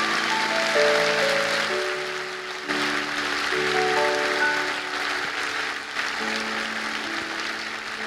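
Congregation applauding over soft background music of slow, held chords that change every second or two.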